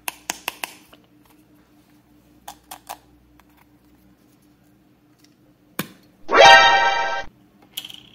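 Hard plastic clicks as a stack of small plastic slime barrels is handled, pulled apart and twisted open: four quick clicks at the start, three more a couple of seconds later, then one more. About six seconds in comes the loudest sound, a single tone with many overtones lasting about a second, rising slightly and then cutting off abruptly.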